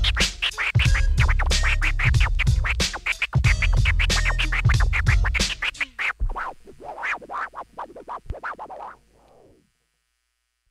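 Turntable scratching over a beat with heavy bass. About six seconds in the beat drops out, leaving a few scattered scratches that fade out before the end.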